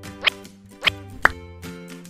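Background music with three quick upward-gliding 'bloop' sound effects laid over it, the third the loudest.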